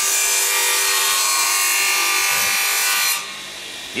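Sima HandSafe bench saw's circular blade cutting through a small block of wood: a loud, steady rasping cut that stops sharply about three seconds in.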